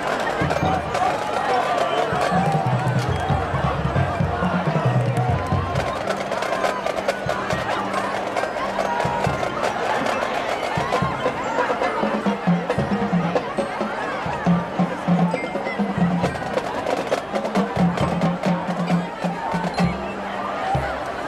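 Marching band performing, with percussion to the fore: low drum beats and many sharp wood-block-like clicks, joined by voices from the crowd.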